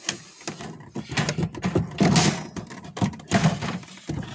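Empty wooden beehive box and frames being handled and lifted out, giving a run of irregular wooden knocks and scraping, loudest about halfway through.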